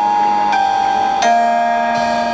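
Electronic keyboard playing held chords in a drumline show's music, the chord changing about half a second in and again just past a second in, with no drum hits.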